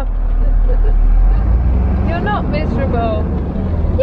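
Horse lorry's diesel engine droning steadily inside the cab while driving, with a voice heard briefly about halfway through.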